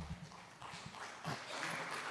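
Faint room noise of a large seated audience in a hall, with low murmuring and a few soft knocks and taps, growing slightly louder toward the end.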